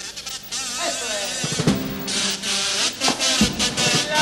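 Carnival kazoos (pitos) buzzing a wavering tune, joined by bass drum and snare drum strokes about a second and a half in.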